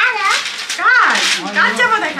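Three short, high-pitched calls, each rising and falling in pitch, with a lower voice underneath in the second half.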